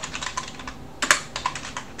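Computer keyboard being typed on: an irregular run of quick keystroke clicks, the loudest about a second in.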